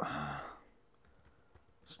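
A man's short voiced sigh, falling in pitch and lasting about half a second, followed by quiet.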